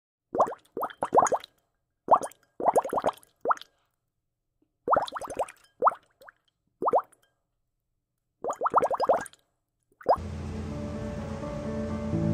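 Cartoon bubble-pop sound effects: clusters of three to six quick rising bloops with short silent gaps between them. Background music comes in about ten seconds in.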